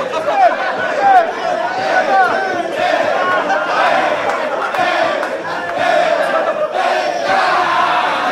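A group of young men whooping, shouting and cheering together, many voices overlapping. Sharp rising and falling whoops stand out in the first few seconds, then it thickens into a steady din of shouting.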